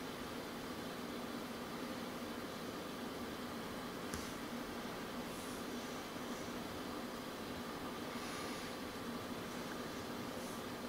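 Steady background hiss with a faint low hum, like room tone, and one faint click about four seconds in.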